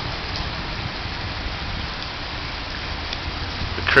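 Steady splashing and rushing of water falling in a large ornamental fountain, over a low steady hum.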